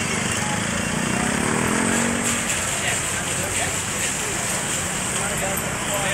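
Busy street traffic: vehicle engines running steadily, with one engine's note rising for a second or so shortly after the start, and indistinct voices mixed in.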